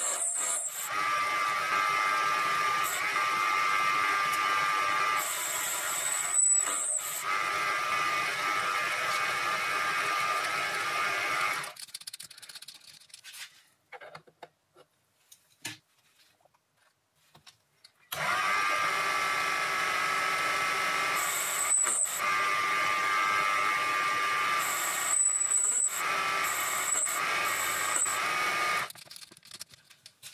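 Proxxon PD 250/e mini lathe running, with a steady whine, while a boring tool cuts a pocket in a steel disc. About twelve seconds in the sound drops to near silence for several seconds, then the lathe runs again until shortly before the end.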